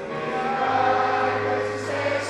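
Choir singing a slow hymn with long held notes, in a large church.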